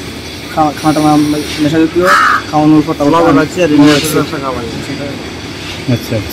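A man speaking in short phrases, with a brief harsh burst of noise about two seconds in.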